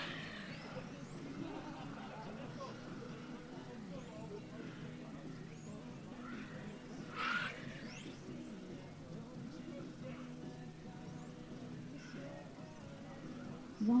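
Faint racing sound from electric 1/10-scale RC touring cars on the track: a steady low hum with brief high motor whines rising and falling as cars pass. A short louder burst comes about seven seconds in.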